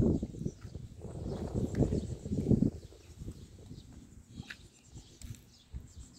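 Rural outdoor ambience: low rumbling and handling noise for the first couple of seconds, then quieter, with a few faint bird chirps.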